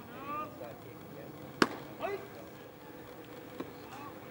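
Baseball field sounds: voices calling out in the first half second and again around two seconds in, and one sharp crack about a second and a half in, the loudest sound.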